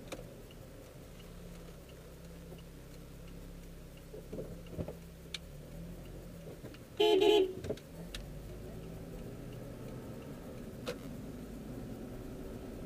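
Low steady hum of a car's engine and road noise heard from inside the cabin, broken about seven seconds in by one short, loud car horn honk of about half a second, sounded at a driver trying to run a stop sign.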